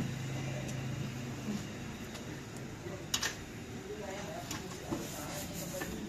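Workshop background noise with faint distant voices. A steady low hum fades out after about a second and a half, and there are a couple of sharp knocks, one about three seconds in and one near the end.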